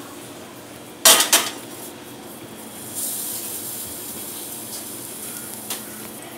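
Metal cookware clattering on a steel gas-stove top as a frying pan is set on the burner: a loud double clank about a second in, then a soft steady hiss and a small click near the end.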